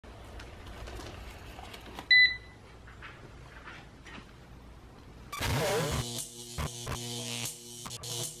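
A single short electronic beep from a eufy RoboVac 11S robot vacuum about two seconds in, over faint room noise. From about five seconds in, music with a steady beat takes over.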